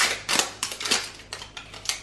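Plastic film seal being peeled and torn off a small tub of kimchi: a quick run of sharp crinkles and crackles, loudest right at the start.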